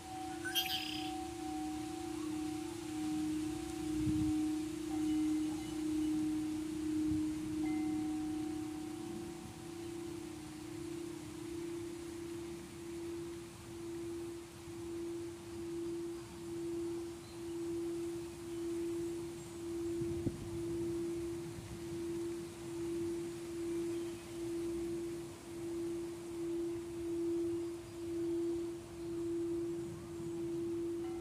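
Singing bowls ringing: one steady tone that pulses about once a second, with a higher bowl tone that fades out about ten seconds in.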